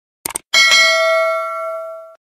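A quick double mouse-click sound effect, then a bell ding that rings on with a few clear tones and fades over about a second and a half. It is the notification-bell sound effect of a subscribe-button animation, marking the bell being clicked.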